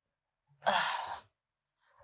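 A person sighing once, a breathy exhale lasting about half a second, just over half a second in.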